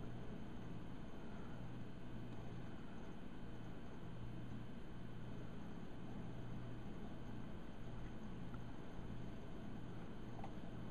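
Steady low hum with a faint hiss: room tone, unchanging throughout.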